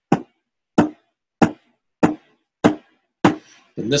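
A steady beat of tapped knocks, about three every two seconds, seven in all, keeping time to mark the pulse of a written rhythm.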